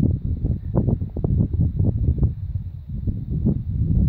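Wind buffeting the camera's microphone: an uneven low rumble with irregular gusty pops.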